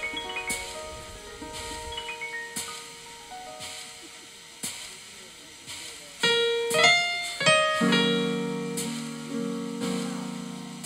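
Electronic keyboard played solo: soft, high runs of notes that fade away, then loud full chords about six seconds in, with deep bass notes joining near eight seconds.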